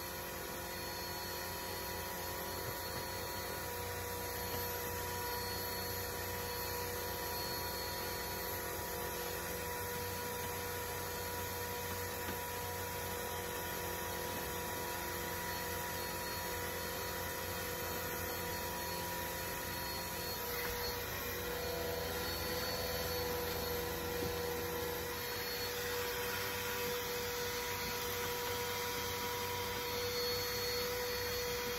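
Bissell PowerForce upright vacuum cleaner running steadily while its hose cleans the carpet. Its tone shifts slightly and it gets a little louder about 20 seconds in.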